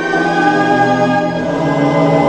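Soundtrack music with choir voices holding long, sustained chords.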